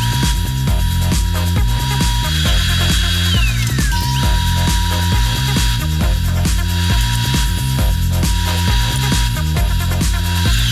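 Background music with a steady beat, over the steady high whine of a table saw spinning a stacked dado blade as it cuts a groove in a pine board.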